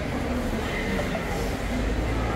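Steady low rumble of a busy airport terminal forecourt, with faint voices in the background.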